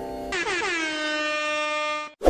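A single sustained horn-like tone, rich in overtones, that starts about a third of a second in, slides down in pitch briefly and then holds steady.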